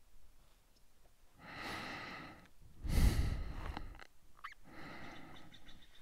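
A person breathing heavily: a breath in, then a louder sigh out about three seconds in, and a softer breath near the end.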